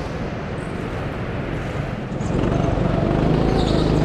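Go-kart driving on an indoor track: a steady running noise with a low hum, growing louder a little past halfway through.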